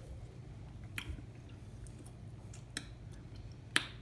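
Faint chewing of a mouthful of soft slider burgers, with a few sharp clicks, the loudest near the end, over a low steady hum.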